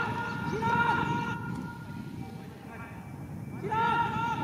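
Men's shouted calls during a football match. They are loud at first, die down in the middle and rise again near the end.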